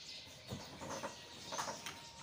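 Faint, light clatter of a large aluminium lid being set onto a cooking pot of rice, a few soft knocks with a brief metallic ring near the end.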